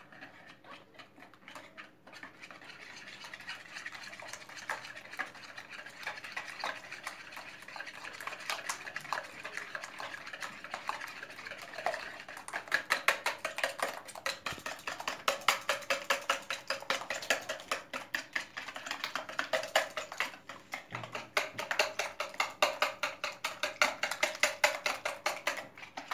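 Wire whisk beating eggs in a plastic bowl, its wires scraping and tapping the bowl in quick, regular strokes. The strokes grow louder about halfway through.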